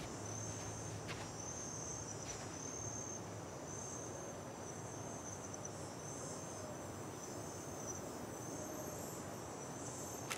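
Crickets chirping steadily in a high, pulsing trill over a low background hum, with two faint ticks about one and two seconds in.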